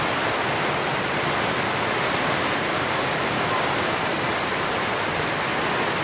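Heavy typhoon rain falling in a steady downpour, with runoff pouring off the edge of a house roof.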